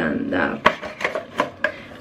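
A cardboard product box and its paper wrapping being handled, with a few sharp taps and knocks and light rustling. The loudest knock comes a little past half a second in and another near a second and a half.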